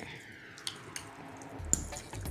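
Faint wet squishing of a spoon tossing cubes of raw ahi in creamy spicy mayo in a glass bowl, with a couple of light clicks of the spoon against the glass.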